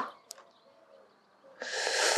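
A quiet stretch with a faint low bird call, then a loud breathy hiss that starts about one and a half seconds in and runs on toward the next words.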